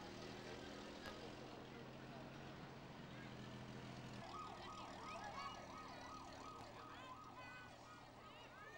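Fire engines driving slowly past, an engine running steadily; about four seconds in, an emergency-vehicle siren starts a fast up-and-down wail, two or three sweeps a second.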